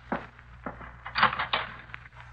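Sound effects in an old radio-drama recording: two short sharp knocks, then a brief scraping rustle about a second in.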